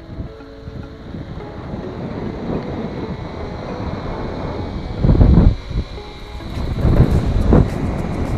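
Wind buffeting the microphone: a rough, steady rumbling rush with heavier gusts about five seconds in and again near the end.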